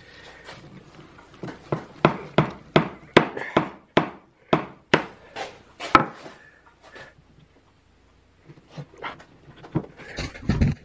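A mallet striking a wooden table leg about a dozen times, two to three blows a second, driving glued triple tenons into their mortises. The joints are very hard to close because the glue has swelled the wood. A few softer knocks follow near the end.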